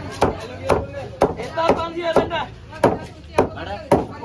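Heavy chopping knife cutting through a yellowfin tuna into steaks and striking a wooden chopping block, a steady rhythm of about two chops a second, eight in all.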